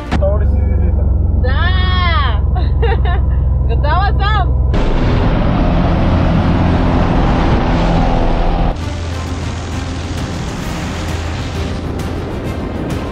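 A loud low hum with two long voice-like whoops sliding up and back down over it. About five seconds in it gives way to a dense rush of wind and light-aircraft engine noise, which drops to a lower level a few seconds before the end with scattered crackles.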